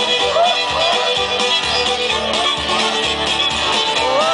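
Live Irish folk band playing an instrumental break: a fiddle carries a quick, ornamented melody over a strummed acoustic guitar keeping a steady beat.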